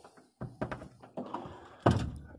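A few faint taps, then one sharp thunk near the end.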